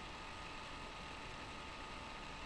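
Low, steady hiss of room tone and microphone noise with a faint steady whine; nothing else happens.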